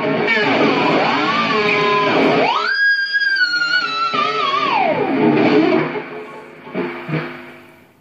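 Distorted electric guitar through an amp, played with harmonics and the Floyd Rose tremolo bar, so the notes swoop down and up in pitch. About two and a half seconds in, a high harmonic squeal rises sharply, holds while sinking slowly, then dives down. The guitar then fades out.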